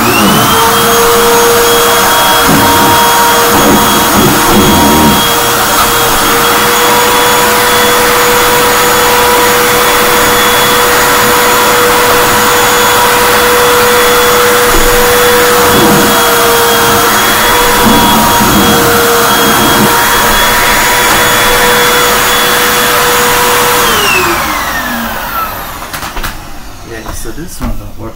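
Hoover WindTunnel 2 High Capacity (UH70800) upright vacuum cleaner being switched on and run over a rug. Its motor spins up at once to a loud, steady whine. About 24 seconds in it is switched off and winds down with a falling pitch.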